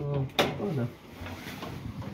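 Men's voices speaking briefly in a small space, with a sharp click about half a second in, followed by faint steady background noise.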